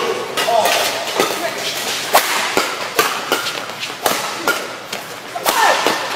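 Badminton rackets striking a shuttlecock in a fast doubles rally: a string of sharp cracks, about eight of them, spaced half a second to a second apart.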